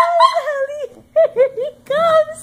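Yorkshire terrier whining in a run of short, high-pitched whimpers, with a brief pause about halfway through.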